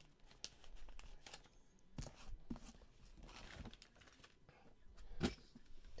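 Cardboard boxes being handled and moved on a table: scraping and rustling with a few light knocks.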